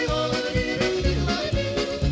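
A male yodeler singing a quick yodel melody that jumps between notes, over a bouncy band accompaniment with a steady bass beat.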